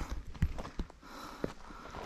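Footsteps of a hiker walking on a dirt forest trail: a handful of separate footfalls.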